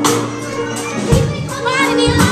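Live blues band improvising, with held bass and keyboard notes under regular drum strokes. A child's voice wavers above the music near the end.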